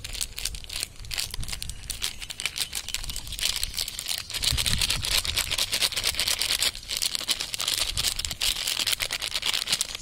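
Plastic maida (flour) packet crinkling continuously as it is squeezed and shaken to pour flour out, a dense, irregular crackle.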